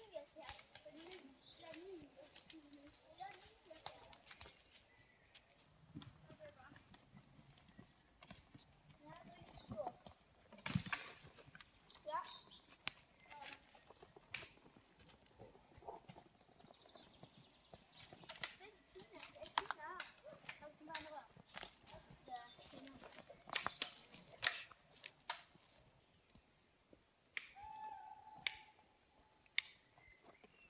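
Footsteps crunching through dry leaf litter and snapping twigs, in scattered irregular clicks, with faint voices now and then.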